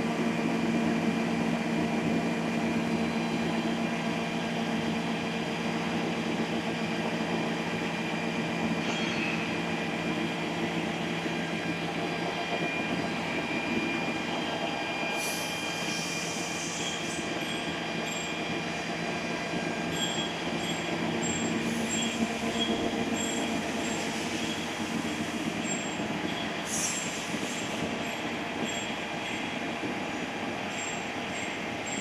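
A three-colour roll-fed printing press running: a steady mechanical drone of rollers and drives with several steady whining tones. A few brief hissing bursts come about halfway through and again later.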